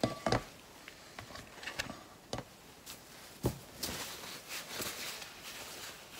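Handling noise from table-top work: a few light knocks and taps, a duller thump about three and a half seconds in, then a second or so of rustling.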